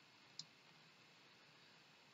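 A single faint computer mouse click about half a second in, otherwise near silence.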